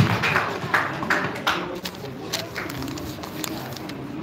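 Audience applause thinning to a few last claps within about two seconds, followed by low voices murmuring.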